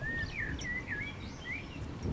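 Songbirds chirping, a quick run of short sliding chirps, over a steady low background rumble.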